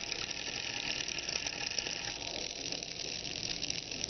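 Metal coins, quarters and a gold dollar coin, shivering against a block of dry ice with a steady, fast buzzing rattle of tiny clicks. The warmer metal makes the dry ice sublime where they touch, and the escaping carbon dioxide gas vibrates the coins.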